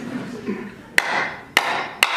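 A hammer striking a nail into a wooden board backed by a lead brick: two sharp blows a little over half a second apart, each with a short ring.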